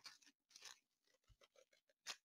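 Near silence with faint crinkling of a small clear plastic zip-top bag being handled, a little louder about half a second in.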